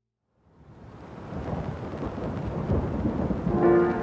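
A low rumble of thunder over steady rain fades in out of silence and builds over about a second. Near the end, sustained musical notes come in over it.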